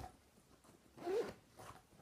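Faint handling noise: a short rustle of a bag or packaging being rummaged through, about a second in.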